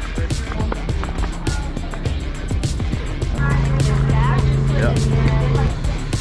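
Background music with a steady beat; a low note is held for a couple of seconds about halfway through.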